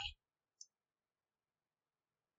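Near silence, with the end of a spoken word at the very start and one faint, short click about half a second in.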